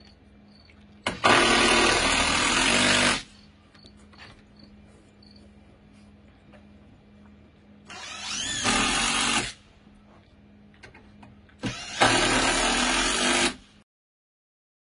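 Cordless drill running in three bursts of one and a half to two seconds each, driving into the wooden deck railing; its motor pitch rises and falls during the middle burst.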